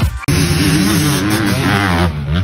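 Music cuts off right at the start. Then an off-road vehicle's engine runs loud, its pitch wavering up and down as it revs.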